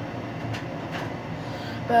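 Steady low rumble with a hiss over it, even in level throughout.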